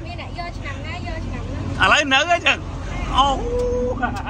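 Mostly talking, loudest about two seconds in, over a steady low rumble, with a short steady tone near the end.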